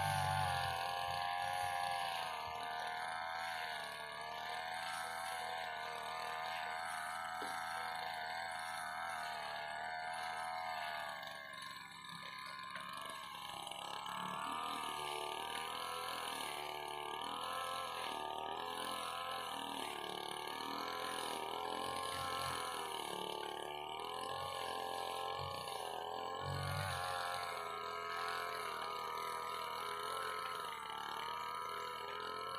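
Petrol brush cutter (grass trimmer) engine running at a distance, its note rising and falling as it revs up and eases off while cutting grass, with a brief drop about twelve seconds in.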